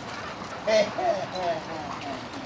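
A dog whining excitedly: a quick run of short, wavering whines starting about a third of the way in.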